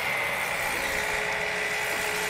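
A machine running steadily, with an even high whine over a noisy hum.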